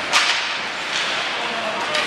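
A sharp crack of hockey play on the ice just after the start, followed by two fainter clacks, over the steady hubbub of an ice rink with voices.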